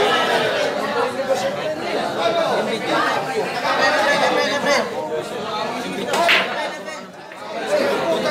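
Steady crowd chatter from onlookers around a pool table. A little past halfway comes a break shot: sharp clacks as the cue ball smashes into the racked balls and they scatter.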